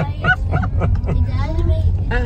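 Adults laughing, with short honking bursts of voice, over the steady low rumble of a car interior.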